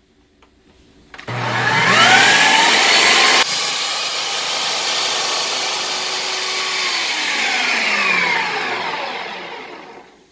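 Ninja food processor motor starting about a second in, its whine rising as it spins up, then running steadily as the blade grinds raw peanuts into peanut butter. The level steps down suddenly after about three seconds, and the motor winds down with a falling whine near the end.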